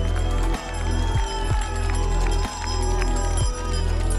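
Background music with a deep bass line and a held melody.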